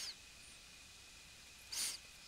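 Quiet room tone with a faint steady high hum. There is a faint short sound at the start and a brief breathy hiss near the end, like an intake of breath before speaking.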